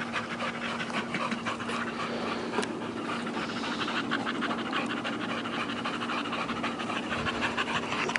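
Two bully-type dogs panting rapidly and steadily, mouths open and tongues out.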